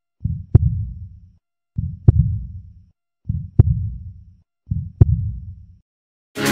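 An edited-in heartbeat-style sound effect: a deep low thud with a sharp click in each beat. It repeats four times, about every one and a half seconds, with dead silence between the beats.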